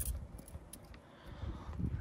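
Faint handling sounds from a trigger spray bottle of automatic transmission fluid being worked over the pivot joints of a car's window regulator, with a few small clicks and a soft hiss of spray.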